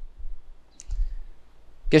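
A pause in a man's speech, broken by a single brief faint click a little before the middle; his speech resumes at the very end.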